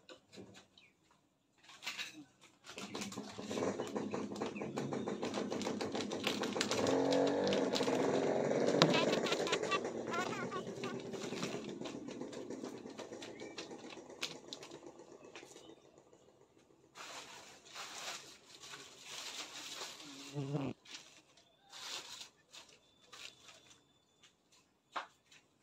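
Plastic sheeting crinkling and rustling as it is spread and pressed by hand over an open stingless-bee hive box. The dense crackle builds to a peak, then fades. Short rustles follow, and a single low thump comes near the end.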